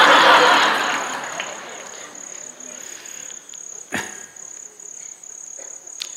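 Crickets chirping in a steady, high, pulsing trill. Over it, a loud wash of audience laughter fades away within the first two seconds, and a single sharp click comes about four seconds in.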